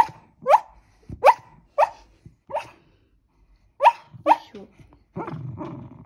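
A sleeping Jack Russell terrier squeaking in a dream: about eight short, high yelps, each rising in pitch, with a pause of about a second midway. These are sleep squeaks, which the owner takes for a bad dream.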